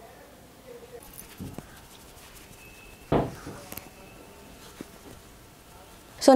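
Faint scattered rubbing and clicking of a makeup brush working liquid foundation into the skin, with one louder knock about three seconds in.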